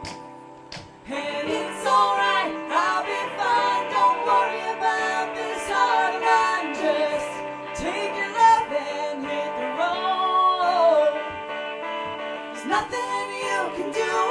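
A woman sings live into a microphone over instrumental accompaniment. The music dips in the first second and the voice comes back in about a second in.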